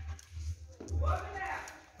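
A person's voice giving one soft, drawn-out call that rises and then falls, over low thumps.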